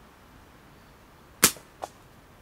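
Simpleshot Scout LT slingshot shot: the flat bands release with one sharp snap about one and a half seconds in, followed less than half a second later by a fainter, shorter crack.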